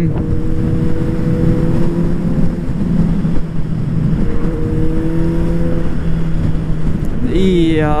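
Motorcycle engine cruising at steady revs while riding behind traffic, with wind rushing over the helmet-mounted microphone.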